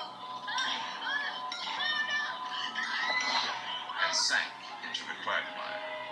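Television programme audio heard through a speaker: background music with held steady tones, and faint voices over it.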